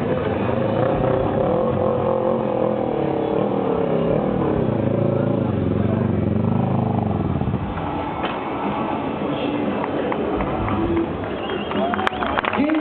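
Stunt motorcycle engine revving, its pitch rising and falling as the throttle is worked during a wheelie. After about seven seconds it drops back and runs lower and quieter.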